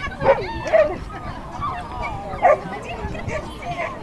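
A dog barking and yipping in short, excited bursts, several times, mixed with people's voices.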